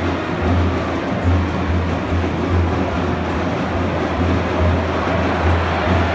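Football stadium crowd noise, the fans singing and chanting, over bass drums from the supporters' band beating about once a second.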